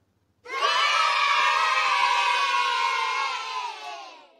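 A group of children cheering together. The cheer starts suddenly about half a second in, holds steady, then fades out near the end.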